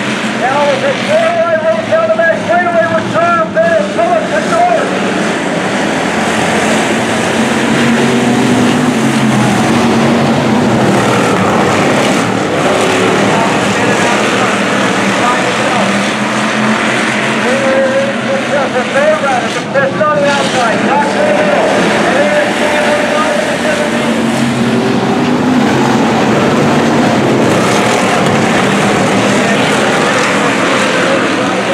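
A field of dirt-track hobby stock race cars running at racing speed: a loud, continuous engine sound whose pitch rises and falls as the cars pass and lift off and accelerate through the turns.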